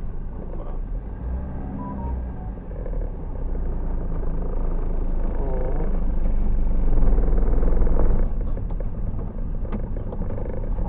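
Car engine and tyre noise heard from inside the cabin while driving. It grows louder over several seconds as the car gathers speed, then drops back suddenly about eight seconds in.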